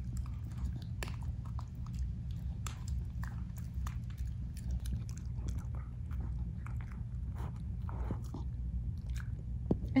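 A dog chewing a thin rawhide-style chicken chew stick: irregular small crunches and clicks of teeth working the chew.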